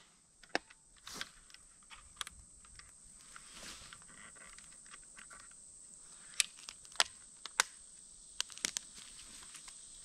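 Small sharp plastic clicks and snaps from a Tasco trail camera being handled and set on a tree: buttons pressed and the case worked shut. The clicks come singly and a few seconds apart, then closer together about six to nine seconds in.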